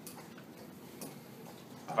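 Quiet room tone with two faint, short clicks about a second apart, and a voice starting right at the end.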